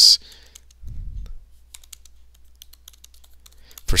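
Typing on a computer keyboard: a quick run of light key clicks starting a little before halfway through and continuing until speech resumes.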